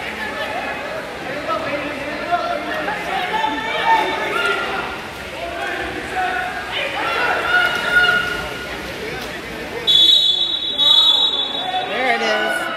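Spectators' voices and shouts echoing in an indoor pool hall. Near the end comes a referee's whistle in two steady, high blasts, the first about a second long.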